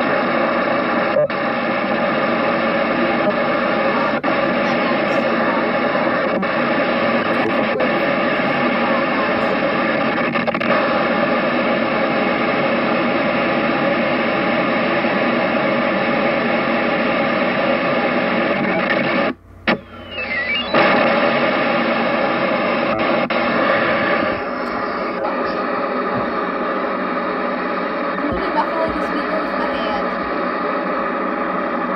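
SoftVoice text-to-speech voice driven to extremes (rate at 0, other settings at 100), coming out as a loud, dense crackling buzz with steady tones in it. It cuts out for about a second partway through and then carries on thinner and quieter.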